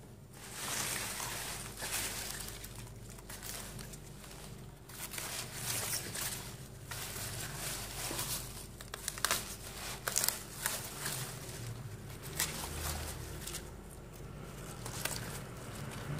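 Leaves and crisp stalks of mustard greens rustling and crinkling as they are handled and pulled about by gloved hands, with irregular sharp crackles, a few louder ones around the middle.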